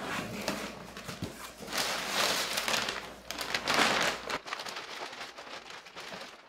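Cardboard box being opened and a clear plastic bag rustling and crinkling as a wrapped motorcycle fuel tank is lifted out of it, with two louder swells of rustling in the middle.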